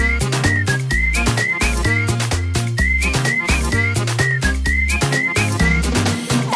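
Instrumental break of a pop song: a high, whistle-like lead phrase of short notes, each flicking up and dropping away, repeats over a steady drum beat and bass line.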